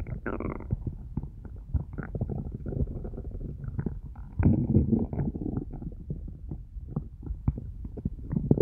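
An empty, hungry stomach growling and gurgling: low rumbles broken by many short gurgles, with a louder burst of rumbling about halfway through.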